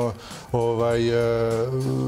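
A man's voice drawing out one long, level hesitation sound, a held filler vowel, starting about half a second in and lasting about a second and a half.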